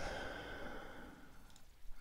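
A man breathing out softly, like a sigh, fading away over about a second and a half into quiet room tone.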